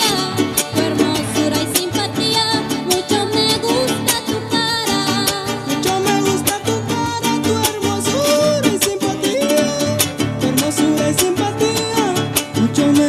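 A huasteco trio playing a huapango: a violin carries a wavering, ornamented melody over a fast strummed rhythm from the jarana and huapanguera guitars, with no singing.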